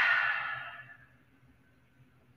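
A woman's long, audible breath out through the mouth, a breathy sigh that fades away within the first second and leaves near silence.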